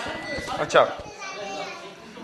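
Speech: a man says a single short word, over the background chatter of a studio audience that includes children.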